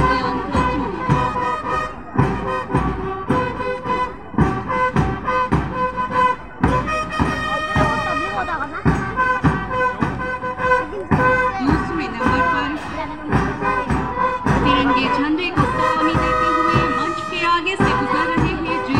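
March music: wind instruments playing a tune over a steady, regular drum beat.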